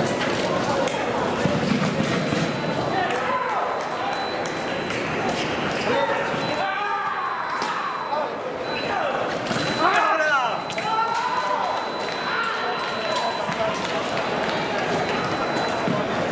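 Murmur of voices in a large hall, with the taps and squeaks of fencers' footwork on the piste and a few sharp clicks. The busiest moment, a bout exchange, comes around the middle.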